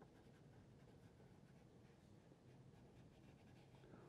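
Faint scratching of a Mungyo soft pastel being rubbed and blended across textured paper.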